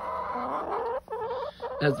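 Hens calling close by: a drawn-out call for about a second, then a shorter one after a brief break.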